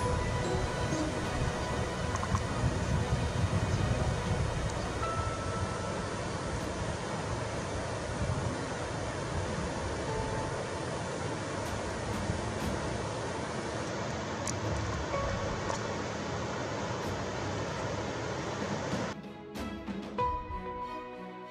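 Steady rush of whitewater rapids, with faint music underneath. About a second before the end the water sound cuts off and only the music remains.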